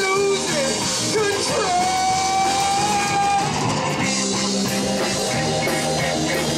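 Live rock band playing, with drum kit, keyboards and guitar under singing; a single long note is held through the middle.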